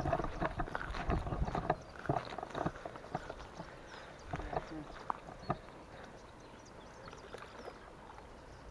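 Footsteps in flip-flops on a grassy, stony bank: a quick run of light slaps and clicks, dense for the first couple of seconds and thinning out as the walker slows and crouches.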